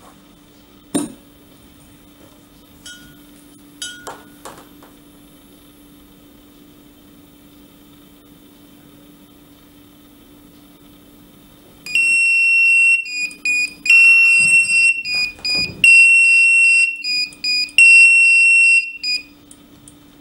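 Analox Ax60+ gas monitoring system's electronic alarm sounder going off in four long, loud, high-pitched beeps about two seconds apart, set off by a heightened carbon dioxide level at the CO2 sensor. Before it, a few light clicks over a low steady hum.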